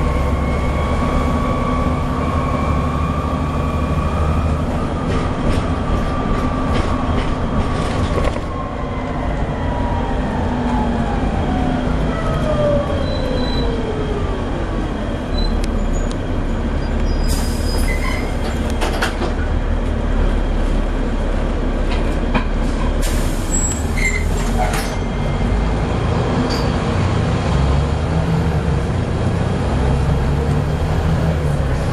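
Inside a Volvo B7TL double-decker bus on the move: the rear-mounted six-cylinder diesel runs as a steady low drone. In the first half a drivetrain whine glides down in pitch over several seconds as the bus slows. In the second half two short bursts of rattling come from the bus body.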